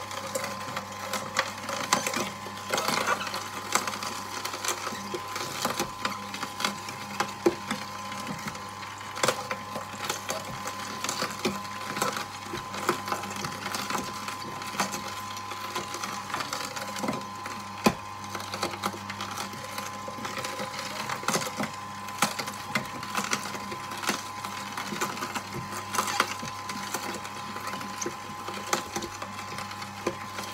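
Electric juicer running: a steady motor hum under constant crunching and crackling as vegetables are crushed and pressed through it.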